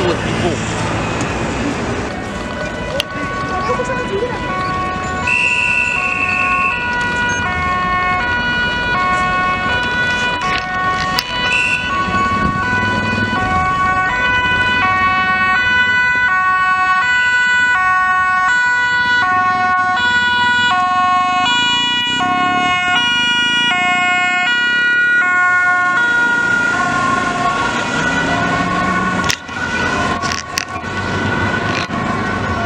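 Dutch ambulance two-tone sirens, alternating between a high and a low note. From about halfway in, two sirens sound at once, out of step with each other, and this is the loudest part.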